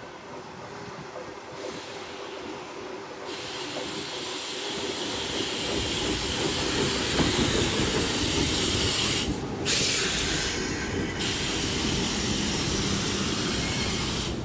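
Toshiba electric multiple unit train arriving and running past close by, its noise growing louder as it comes in. A loud, steady high hiss sets in about three seconds in and breaks off briefly twice near the middle.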